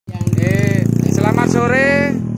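Motorcycle engine idling through an aftermarket slip-on exhaust: a steady, rapidly pulsing low rumble.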